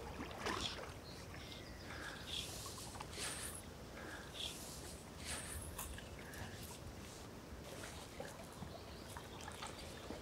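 Faint water lapping and trickling around a small boat, with a scattered handful of brief soft sounds.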